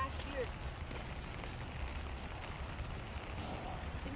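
Outdoor wet-weather background: a steady hiss of light rain with uneven low rumbling from wind on the phone's microphone, and a brief bit of voice right at the start.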